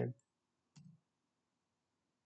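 A single faint computer mouse click just under a second in.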